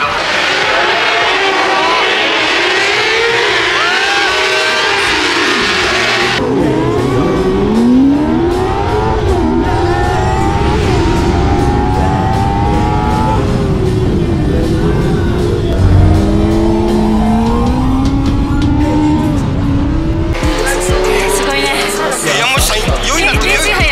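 A 400cc racing motorcycle engine revving hard and climbing through the gears, its pitch rising again and again, heard from an onboard camera, mixed with background music.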